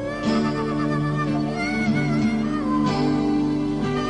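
Live Pamiri band music: a wailing melody line that slides and bends in pitch over sustained low chords.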